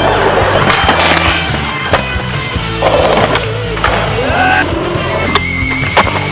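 Skateboard wheels rolling and scraping on concrete, with a few sharp board clacks, over loud rock music with guitar.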